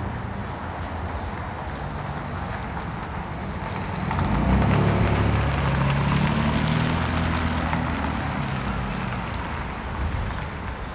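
A car driving past close by over a steady hum of street traffic: its engine and tyres swell about halfway through and then fade.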